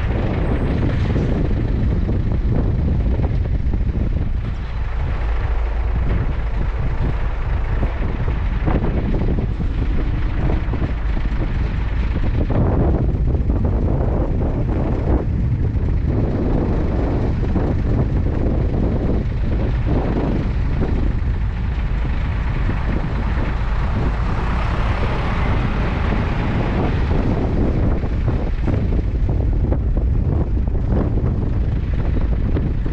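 Wind buffeting the microphone of an action camera mounted outside on a minibus carried by a car transporter, over the steady low rumble of the transporter truck. The noise is even throughout, with a brighter swell of hiss about three-quarters of the way through.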